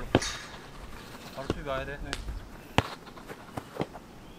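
Sharp thuds of a football being kicked and trapped on artificial turf: a loud one right at the start, another shortly after two seconds, a loud one near three seconds, and two lighter ones near the end.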